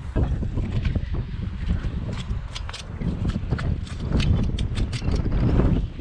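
Rustling, crunching steps in straw bedding beside a horse, a run of short crackles from about two seconds in, over a heavy low rumble on the head-mounted camera's microphone.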